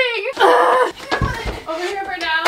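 A wooden closet door being handled as it is taken down and carried off, with a short scrape and a few low knocks and bumps about a second in, under a woman's voice.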